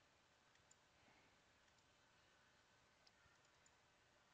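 Near silence: faint room tone with a few faint clicks of a computer mouse.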